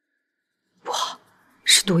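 A short breathy sound about a second in, then a woman's voice near the end.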